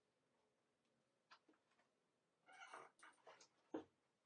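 Near silence, broken by a few faint short sounds about a second and a half in and again in the second half, and a brief click near the end.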